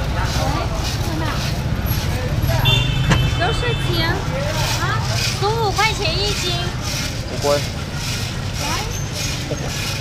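Busy street ambience: a steady low traffic rumble with scattered voices around. A brief high-pitched tone sounds about three seconds in.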